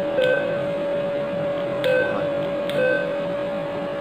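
ATM keypad beeping three times as the amount keys are pressed, one short beep per key press, about a second and a half apart and then about a second apart. A steady hum runs underneath.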